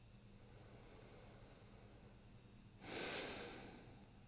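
One audible breath lasting about a second, near the end, from a person lying still in a quiet room.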